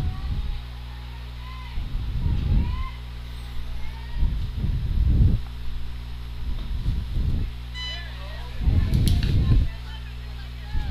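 Outdoor ballfield ambience: wind gusts buffet the microphone in low rumbles about every two seconds over a steady electrical hum, with faint high voices calling from the field. Near the end comes a short high beep, then a sharp click.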